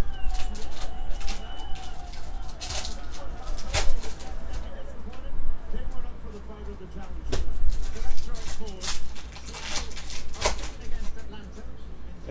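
A foil trading-card pack is torn open by hand and the cards are flipped and shuffled through, making a string of sharp crinkles, rips and card snaps.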